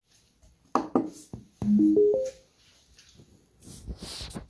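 IKEA Eneby Bluetooth speaker being switched on: a few sharp clicks, then a short electronic start-up chime of four notes stepping up in pitch.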